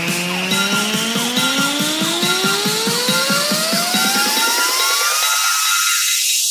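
Electronic dance music build-up: a synth tone rising steadily in pitch over a pulse of about five beats a second, with the bass falling away toward the end.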